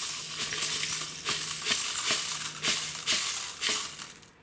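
Stainless steel tumbling shot and silver jewellery poured out of a rock tumbler barrel into a plastic strainer, a continuous jingling clatter of many small metal pieces, easing off near the end.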